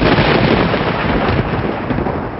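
Cinematic intro sound effect: a loud, rumbling blast of noise that sets in suddenly just before and eases off a little toward the end.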